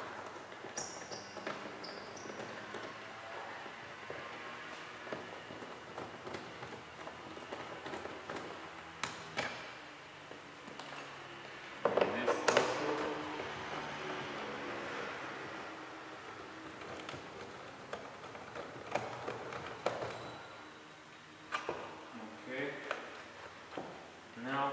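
Scattered clicks and taps of a screwdriver and plastic door-trim parts while screws are taken out of a car's rear door panel, with a louder knock about halfway.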